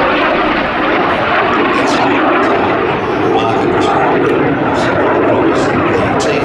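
BAC Jet Provost T3A's Viper turbojet engine, loud and steady as the jet trainer flies its display.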